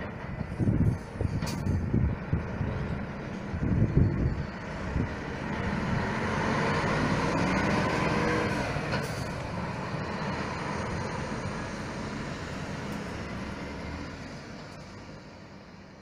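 Hino tour coach driving past: low uneven rumbles in the first few seconds, then the engine and tyre noise swells to its loudest about six to nine seconds in and fades steadily as the coach drives away.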